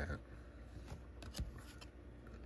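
Cardboard trading cards being handled in the fingers: a few faint light clicks and rustles.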